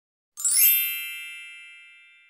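A bright chime sound effect: one ding struck about a third of a second in, ringing on and fading away slowly.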